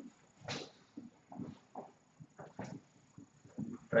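Marker pen writing on a whiteboard: a series of short, separate strokes as a fraction with square roots is written out.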